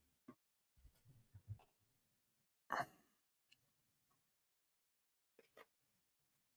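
Near silence, broken a little under three seconds in by one short sigh-like breath, with a few faint soft bumps and ticks of a person handling his hair and a hat.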